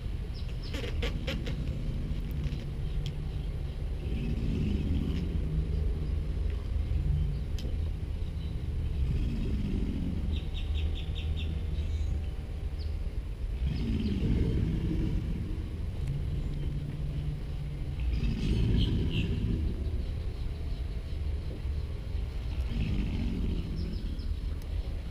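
American alligators bellowing in the breeding season: deep rumbling calls that swell and fade every four or five seconds over a steady low rumble. Birds chirp now and then above them.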